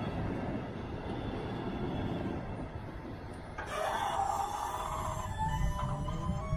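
Low, steady rumble at a railway level crossing with the barriers down. About three and a half seconds in, music with held notes comes in over it.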